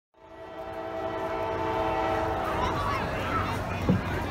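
Diesel locomotive air horn, on the lead unit NS AC44C6M 4129, sounding one long steady chord that fades out after about two and a half seconds, with a stadium PA announcer's voice starting over its tail.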